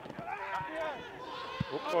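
Men's voices talking over the referees' VAR communication channel, the words unclear, with a brief low thump about one and a half seconds in.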